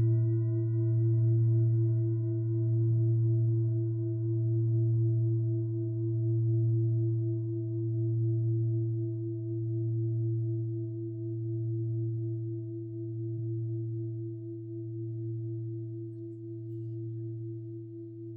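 A large singing bowl struck once, its deep tone ringing on and slowly fading, the loudness wavering in a slow, regular pulse about every second and a half.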